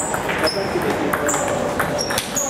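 Table tennis rally: a celluloid ball struck by rubber-faced paddles and bouncing on the table, a quick series of sharp clicks, several of them ringing briefly in a high ping.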